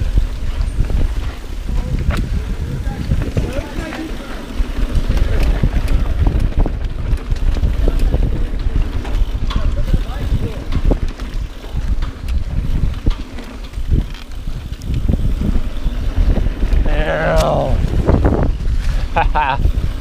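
Mountain bike rolling fast down a dirt singletrack: wind buffeting the camera microphone with a constant rattle and knocking of the bike over bumps and roots. Near the end a rider lets out a brief falling whoop.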